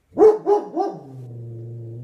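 A dog barking three times in quick succession, then a long low steady sound. The barking is set off by a cat outside.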